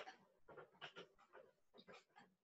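Near silence: room tone with a few faint, brief, irregular sounds.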